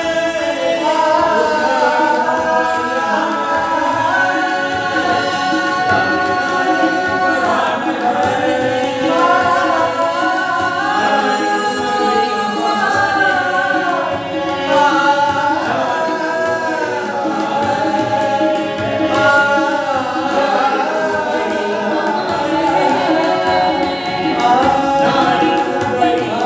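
Several men's voices singing a Hindi song together, with harmonium and tabla accompaniment. The sustained melodic lines are held over a steady harmonium drone.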